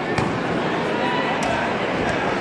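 Steady chatter of a crowd in a large sports hall, with one sharp smack just after the start as a taekwondo kick lands on a sparring body protector, and a fainter click about a second and a half in.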